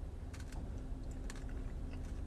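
A person chewing a fruit bowl with crunchy cacao nibs and goji berries: a few sharp crunching clicks, about half a second in and again just after a second, over a steady low hum.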